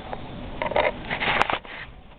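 Handling noises as a cloth rag and loose cables are picked up and moved: a few short rustles, with a sharp click about one and a half seconds in.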